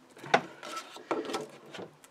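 Folded clear acetate sheet handled by hand: a sharp tap about a third of a second in, then several short plastic rustles.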